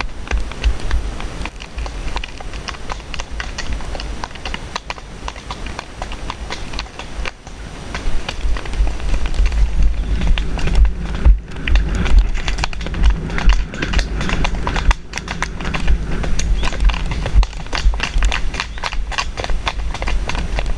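Hoofbeats of a grey pony mare and the horse ahead of her on a dirt track, over a steady low rumble of wind on the helmet camera's microphone. About eight seconds in the hoofbeats grow louder as the pace picks up.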